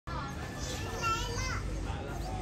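Children's voices calling out and chattering, one high-pitched call standing out about a second in, over a steady low background rumble.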